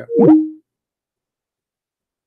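Short electronic chime from an online call, with two tones gliding apart and crossing, then a brief held tone, lasting about half a second. It is the sound of a caller dropping off the call.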